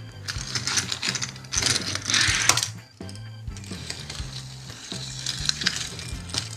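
Small die-cast toy cars rolled and pushed across a tabletop: a rattly rolling and scraping of little wheels in bursts, loudest about two seconds in, with light clicks of the cars knocking together, over soft background music.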